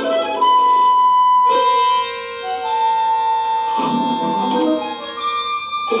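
Background score music: long held notes, with a fuller chord coming in about a second and a half in and lower notes moving near the four-second mark.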